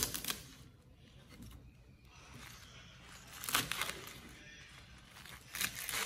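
Crisp bok choy being cut and handled on a wooden chopping board: a few short crunches and rustles at the start, about three and a half seconds in and near the end, with quiet between.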